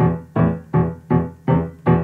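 Piano playing six short, detached low chords at a steady pulse of a little under three a second, each dying away before the next. These are two-note left-hand chords with the top note left out, the simpler version for smaller hands.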